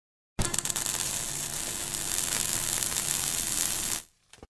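Sizzling, crackling electrical-static sound effect for an animated sparking logo. It starts suddenly about half a second in and holds steady, with a faint hum beneath it.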